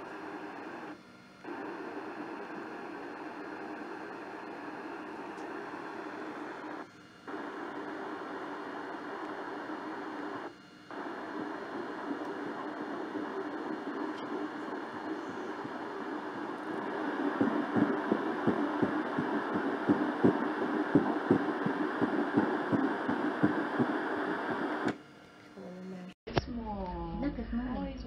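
Fetal heartbeat on an ultrasound machine's Doppler audio. It starts as a steady whooshing hiss that cuts out briefly three times, then turns into a fast rhythmic pulse of about two to three beats a second, louder, over the last third.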